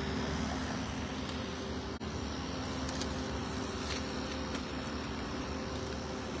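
Steady low mechanical hum with a few faint held tones, a motor or engine running, under general outdoor noise.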